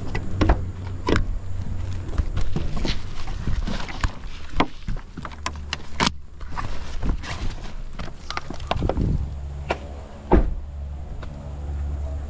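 Bags being loaded into the back of a car: a run of knocks, bumps and rattles over a low rumble, with one loud thump near the end.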